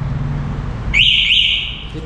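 Benling Aura electric scooter's anti-theft alarm giving its unlock signal from a remote key-fob press: two quick rising electronic chirps about a second in, lasting under a second.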